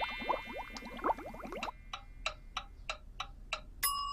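A twinkling sound effect of quick rising swoops, then a wind-up kitchen timer ticking about three times a second, ending in a bell ding near the end as the dial reaches zero: the cooking time is up.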